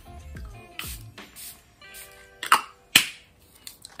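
Pump-mist bottle of makeup setting spray being sprayed several times: short hissing spritzes, the two loudest about two and a half and three seconds in, over soft background music.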